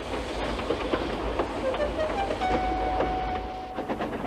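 Steam train pulling away: a steady low rumble and rail noise, with a thin steady tone in the second half.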